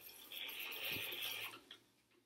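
Film reels on hand film rewinds being turned, with film or a gloved hand rubbing, for about a second. A small click comes about halfway through.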